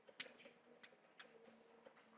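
Faint chalk tapping and clicking on a blackboard during writing: a handful of sharp, irregular taps over a low steady hum.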